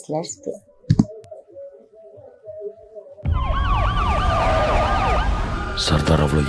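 Movie-trailer soundtrack. After a quiet stretch with a single thump about a second in, a fast up-and-down wailing siren over a deep rumble starts suddenly about three seconds in and continues loudly.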